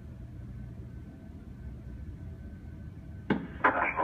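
Low, muffled rumble of distant aircraft engines heard through terminal window glass, with a faint steady hum over it. A little over three seconds in, a person's voice starts up loud and close.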